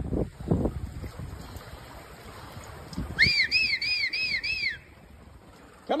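Floodwater sloshing and splashing as horses wade through a flooded barn. About three seconds in, five quick high whistled notes, each rising and falling.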